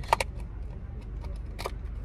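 A few sharp clicks and light knocks of things being handled inside a car, over a steady low hum of the car's cabin.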